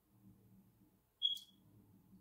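Faint low hum of a quiet room, broken a little past a second in by one short, high-pitched chirp.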